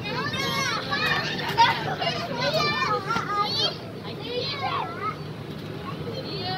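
Young children's high voices shouting, squealing and chattering as they play, many short calls one after another, over a steady low hum.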